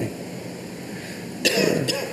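Quiet room tone during a pause, then a short cough about one and a half seconds in.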